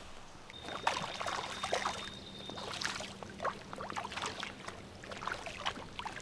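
Small, scattered splashes on a pond surface as rainbow trout rise to take fish-food pellets, with a faint steady hum underneath.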